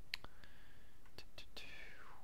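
About five short, sharp clicks from working a computer, two near the start and three close together past the middle, with a faint whispered mutter between them.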